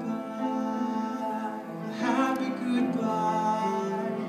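Grand piano played with a man singing a slow song, the notes held for about two seconds at a time, with a new phrase starting about halfway through.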